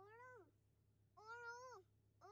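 Faint voice of a small child making two short, high calls, each rising and then falling in pitch.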